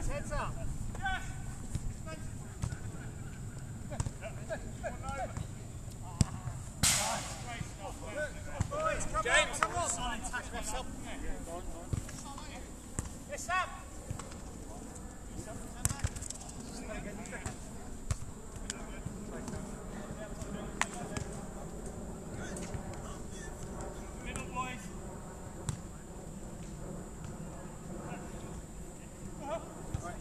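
Small-sided football match on artificial grass: players' shouts and calls from across the pitch, strongest in the first half, with a few sharp thuds of the ball being kicked.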